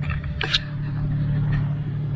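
Wind on the camera microphone: a steady low rumble, with one short knock about half a second in.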